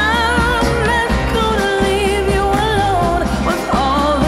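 Background pop song with a singer's voice over a steady bass and beat.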